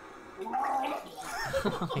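A man gagging and retching at the taste of a blended Doritos and Code Red Mountain Dew drink, starting about half a second in, with laughter near the end.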